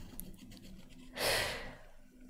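A person's quick, audible intake of breath about a second in, starting sharply and fading out within under a second.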